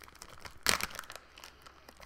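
Clear plastic wax-melt packaging crinkling and clicking as it is handled, with one louder crackle a little under a second in.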